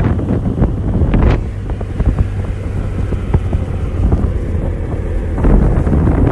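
Loud, steady low rumble of wind or vehicle noise buffeting a phone microphone, with scattered knocks and clicks over it.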